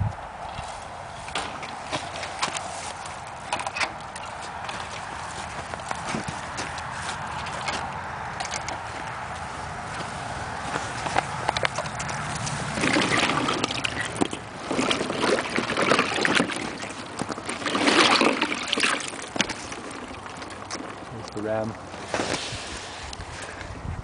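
Water from a hose running into a plastic tub of broken ice, then louder splashing and sloshing about halfway through as the water churns the ice slabs.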